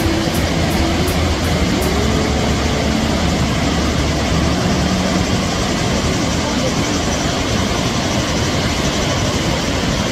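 Steady rushing of water pouring over the Krka river's waterfall cascades, with faint voices in the background.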